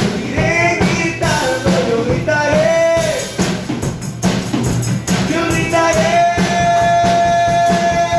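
Live worship band playing a Spanish-language praise song: a woman singing over acoustic guitar and drum kit, holding one long note from about six seconds in.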